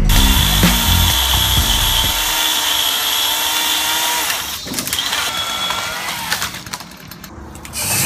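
Electric chainsaw motor running with a steady high whine, breaking off about four and a half seconds in, then running again briefly at a different pitch before dying down.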